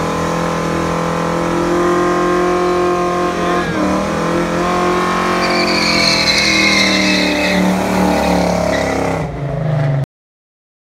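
A car doing a burnout: the engine is held at high revs while the rear tyres spin and squeal. The revs drop briefly about four seconds in, and the tyre squeal is loudest from about five and a half to eight seconds in.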